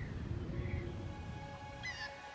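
Animated-film soundtrack: a few short bird chirps over a low rumbling ambience, then soft sustained music fading in about a second and a half in, with a brighter chirp near the end.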